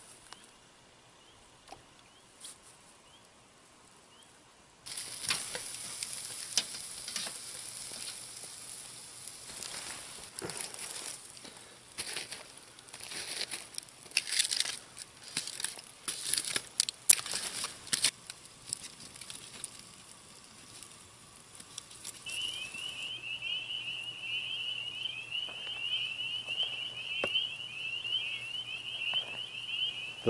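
Steak sizzling on a wire grill grate over campfire coals, with crackling and sharp clicks from the fire and the metal tongs. The first five seconds are faint, and the sizzling starts suddenly. A high, wavering whistle joins in for about the last eight seconds.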